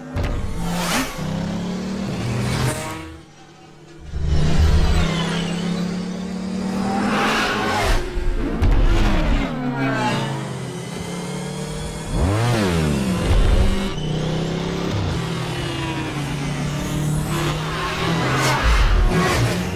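Sound-designed light cycle engines: electronic motor whines revving and sweeping past in rising and falling pitch, several times, over a steady low synth score. The level drops briefly about three seconds in, then comes back loud.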